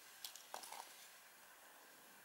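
Near silence: faint room tone, with a few soft, faint ticks in the first second.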